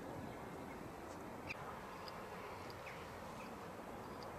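Faint outdoor ambience: a steady low background hiss with a few scattered short chirps of small birds.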